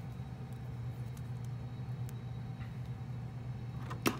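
Steady low background hum with a few faint, scattered clicks as the joints of a plastic Marvel Legends Spider-Man action figure are moved by hand.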